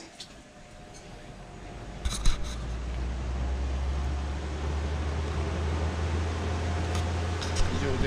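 Electric stand fan running, its airflow on the microphone making a steady low rumble that grows louder over the first few seconds. A sharp knock about two seconds in.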